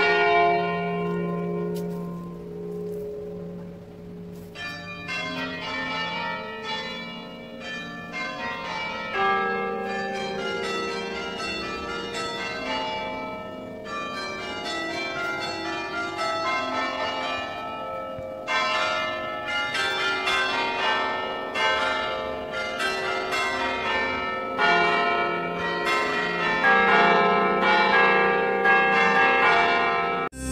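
Church bells ringing: a single fading ring for the first few seconds, then from about four seconds in a long run of overlapping strikes at many different pitches, each note ringing on and decaying.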